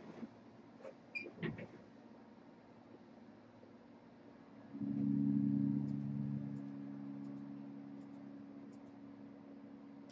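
A few faint clicks, then a small electric motor humming in a low, steady tone that starts about five seconds in and slowly fades away.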